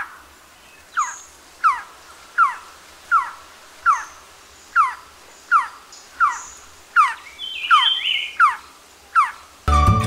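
Malabar trogon calling: a steady series of about thirteen short notes, each sliding down in pitch, about one every three-quarters of a second.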